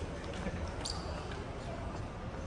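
Footsteps on the concrete floor of a parking garage over a steady low rumble, with one sharper click a little under a second in.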